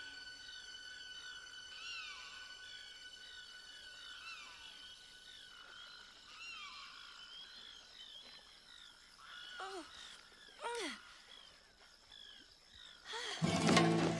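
Animated night-pond soundtrack: frogs chirping in quick short calls over soft held music notes. A few longer falling sweeps come around ten seconds in, and a much louder passage with sliding pitch starts near the end.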